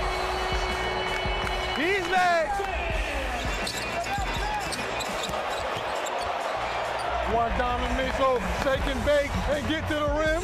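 Basketball game sound in an arena: crowd noise with shouting voices and a ball being dribbled on the court. A held note that is already sounding stops about two seconds in.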